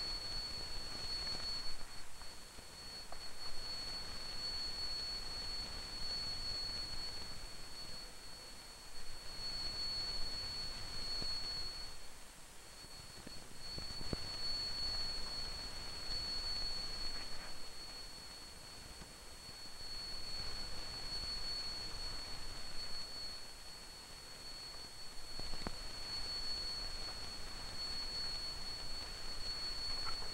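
A steady, high-pitched single test tone from a horn loudspeaker, picked up by a microphone over a faint hiss. Its loudness drops and comes back several times as a board is held in the way of the reflected and direct sound beams.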